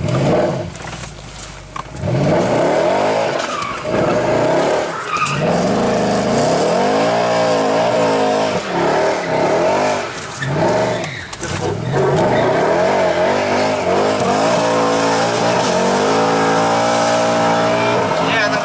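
Mercedes-Benz C-Class engine revving hard, its pitch climbing and dropping again and again, while the rear tyres spin and squeal through a smoky burnout drift. The revving starts about two seconds in and is heard from inside the cabin.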